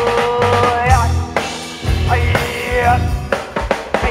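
Live band playing: drum kit with snare and bass drum hits under an electric bass line. A held melodic note ends about a second in, and a bending melodic phrase follows about two seconds in.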